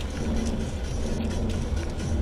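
A car's engine and tyres heard from inside the cabin as a steady low drone while it drives up a steep, narrow road.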